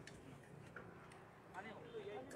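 Near silence: faint voices in the background with a few light clicks.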